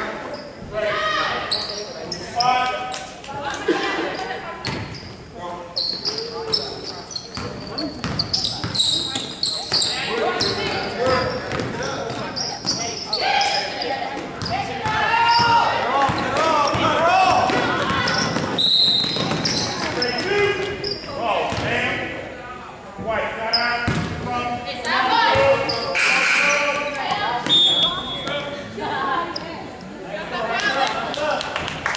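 Basketball bouncing on a hardwood gym floor during live play, with indistinct shouting voices from players and spectators, all ringing in a large gym.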